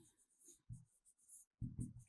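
Faint pen-on-surface writing sounds, a few soft scrapes and taps about two-thirds of a second in and again near the end.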